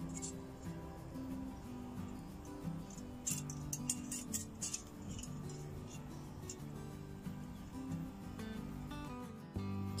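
Background music with low notes changing step by step. About three to five seconds in, a few light metallic clinks come from the wire and flat steel bars of a homemade trap being handled.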